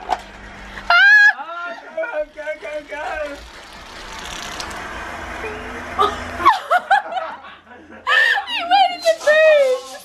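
People laughing hard and shrieking: a woman's high-pitched laughter comes in bursts, loudest about a second in and again over the last few seconds.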